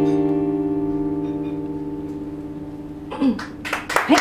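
Closing piano chord held and slowly dying away. Near the end, a brief voice and a few sharp sounds break in over the fading chord.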